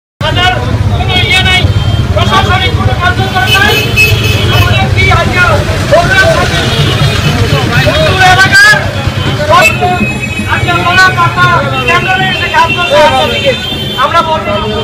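Voices of people talking on a busy street over the steady low rumble of passing vehicle traffic; the sound cuts in abruptly at the very start.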